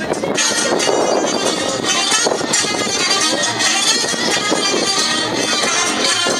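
Romanian folk dance music from the Novaci area of Oltenia, with voices, in a dense, busy mix.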